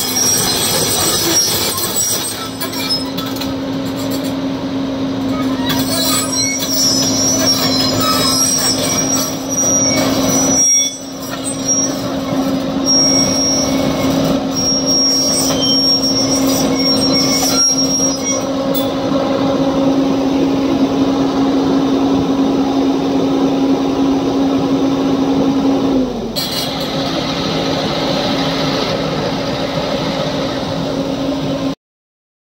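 JCB tracked excavator working: its diesel engine and hydraulics run with a steady hum, and high-pitched metallic squeals come and go over it. The sound drops out briefly about eleven seconds in and changes abruptly near the end.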